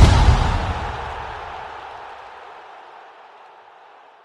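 Broadcast logo-sting sound effect: a deep boom that fades away over about three seconds.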